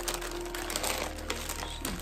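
Clear plastic bag crinkling as it is handled, over faint background music with a few held notes.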